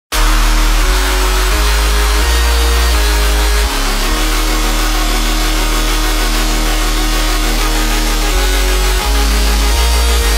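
Electronic dance music: the opening of a Melbourne Bounce remix, starting abruptly, with deep sustained bass notes that change pitch every second or so under a dense, gritty, noisy synth layer.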